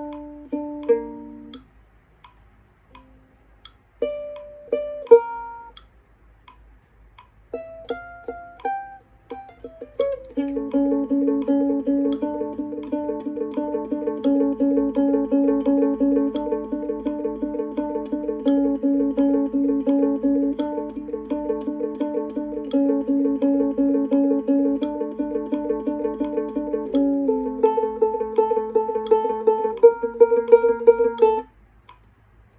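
Solo ukulele played fingerstyle: a few plucked notes with pauses, then a quick rising run, and from about ten seconds in a fast, evenly repeated pattern of notes that shifts to a new figure near the end.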